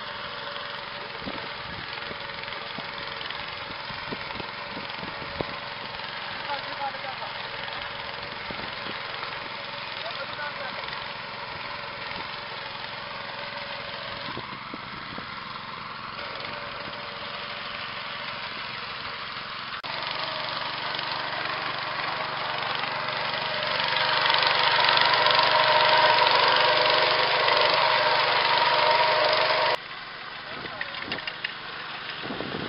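An engine-driven machine running steadily, growing louder over the last third and breaking off abruptly just before the end.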